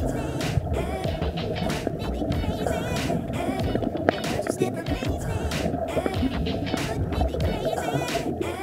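Steady, dense low underwater rumble picked up by a submerged camera, with music playing along with it.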